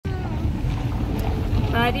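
Steady low rumble of a car in motion heard inside the cabin, with a woman's voice starting near the end.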